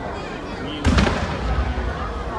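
A single loud firework bang about a second in, followed by a low rumble, over a crowd's chatter.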